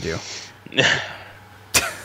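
A man's short, breathy vocal burst about a second in, right after a spoken word, with a sharp click near the end.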